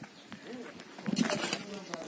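A hand tool digging into dry, stony soil, with a few short rasping scrapes in the second half.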